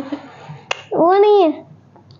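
A child's voice making one short drawn-out syllable that rises and falls in pitch, about a second in. Just before it comes a single sharp click.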